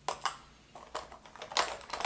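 A few light clicks and taps of plastic makeup cases being handled, with a sharp click at the start and scattered lighter ones after it.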